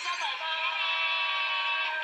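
Game-show music playing through a television's speaker: a bright electronic jingle that settles into one long held chord about half a second in and breaks off near the end.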